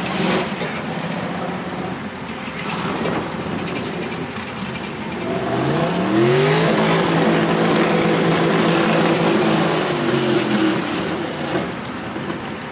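Off-road tube-frame buggy's engine running low and rough, then revving up about halfway through, holding high revs for several seconds as it pulls through the mud, and easing off near the end.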